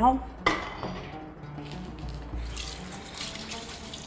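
Kitchen tap running into a sink as hands are rinsed under the stream, the water starting about halfway through. A single knock comes just before it.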